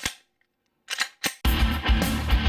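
Gunshots: one sharp shot, then about three more in quick succession about a second later. Loud rock music with electric guitar comes in just after them.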